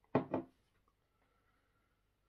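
A man's voice briefly at the start, a syllable or two, then near silence: small-room tone.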